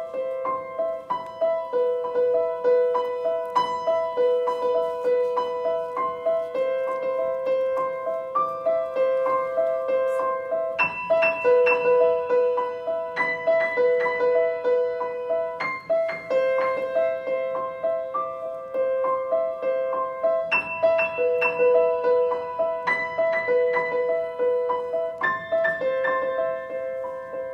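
Grand piano played solo: a repeating figure of notes in the middle register. Fuller chords are struck roughly every five seconds from about eleven seconds in.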